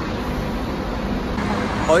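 Steady low rumble of road traffic and buses, with a faint constant hum underneath; a man's voice starts right at the end.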